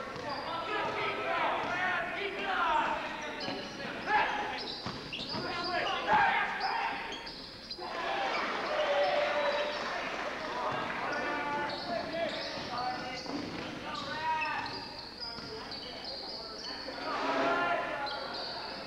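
A basketball bouncing on a hardwood gym floor during play, with indistinct voices shouting in the echoing hall.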